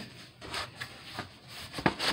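A Creative Memories scrapbook album with a plastic book-cloth cover being handled and turned over: light rubbing and small taps, with one sharp knock near the end.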